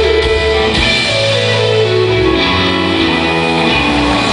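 Rock band playing live in an instrumental passage led by guitar, with drums underneath. Partway through, a run of notes steps downward over about two seconds.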